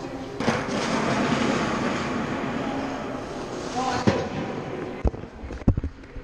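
A loud scraping hiss starting suddenly and lasting a few seconds, with a short squeak near its end. Sharp knocks and bumps follow near the end as the action camera is grabbed and handled.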